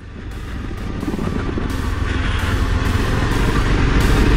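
Honda CBR250R single-cylinder engine and wind noise while riding, heard from the rider's helmet camera, fading in from silence and growing steadily louder as the bike gets under way.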